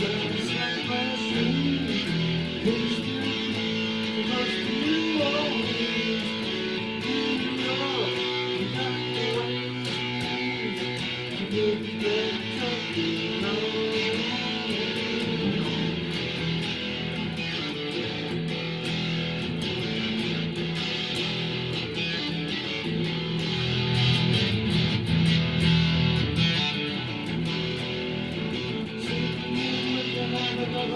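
Guitar music, strummed and played continuously without a break.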